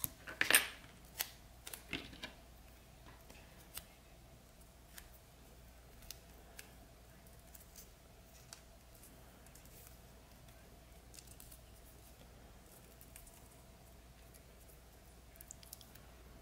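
Electrical tape being handled and wrapped around a wired coin-cell battery: a few sharp crackles in the first two seconds, then faint scattered clicks over a faint steady hum.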